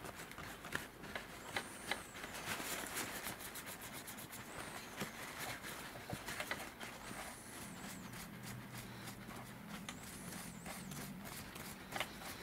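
Dry paper kitchen towel rubbing and crinkling against a small copper-plated 3D-printed figure as it is buffed by hand, with many small crackles. The towel carries no polish; the rubbing is brightening the fresh copper plating.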